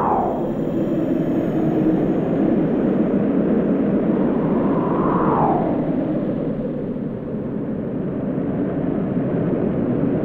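Loud, steady rush of wind added as a sound effect, with a falling whoosh at the start and another about five seconds in.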